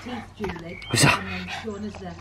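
A pug barks once, short and sharp, about a second in.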